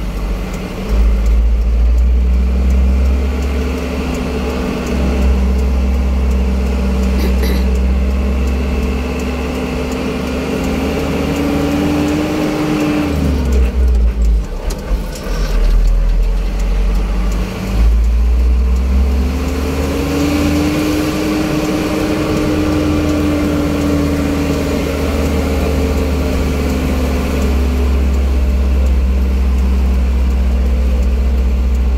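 Engine and road noise of a moving car heard from inside the cabin, with a heavy low rumble underneath. The engine note rises slowly, drops sharply about thirteen seconds in, then rises again and eases off.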